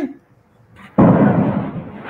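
A sudden loud burst of noise about a second in, fading over the following second, as a newly added caller's microphone comes onto the video call.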